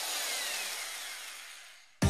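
A hissing sound-effect swell over a title card, starting abruptly and fading away over about two seconds, with faint falling whistles running through it.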